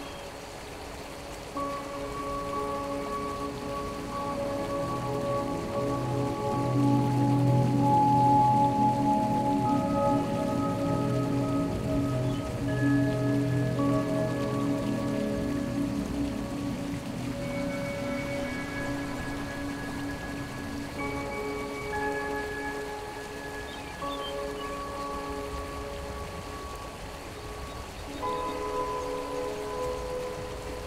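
Slow, calm music of long held notes and chords over the steady rush of a small mountain stream. The music grows fuller and louder in the middle, with deep low notes, then thins out again.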